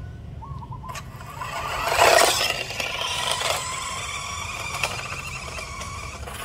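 Toy radio-controlled Lamborghini car driving on rough concrete: its small electric motor whines and its wheels scrape over the grit. The sound swells to its loudest about two seconds in, then settles into a steadier whine.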